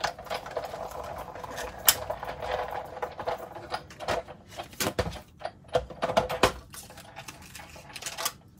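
Big Shot die-cutting machine being hand-cranked, its rollers grinding the plastic cutting plates and metal bee die through for about four seconds. Then come sharp clicks and knocks as the plates are handled and the die-cut pieces are taken out.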